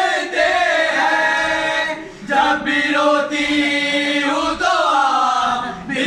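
A group of men chanting a noha, a Shia mourning lament, in long held sung lines, with a brief pause for breath about two seconds in.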